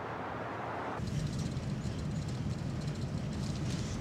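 Passing-traffic and road noise as a van drives along a street. About a second in it changes to the low rumble of the van's engine and tyres as heard from inside its cab.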